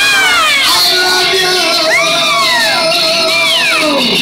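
High, cat-like sliding cries from a performer, each rising and falling in pitch over about half a second, over a long held tone that drops away near the end, with acoustic guitar underneath.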